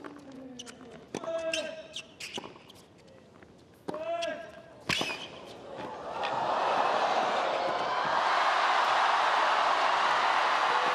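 Tennis rally on a hard court: sharp racket strikes and ball bounces, with a few short grunts from the players on their shots. From about six seconds in, a crowd noise swells up and holds loud while the rally goes on.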